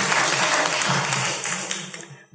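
Recorded applause sound effect from a learning website, a steady clatter of many hands clapping that fades out near the end, played as the reward for finishing the exercise set.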